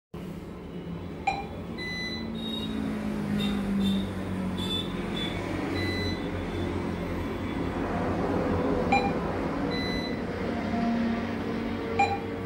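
An ATM beeping as its buttons are pressed: a few short electronic beeps, about a second in and again near nine seconds, over a steady low background hum.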